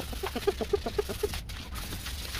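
A bird's rapid run of short, pitched calls, about eight a second, stopping after about a second and a quarter.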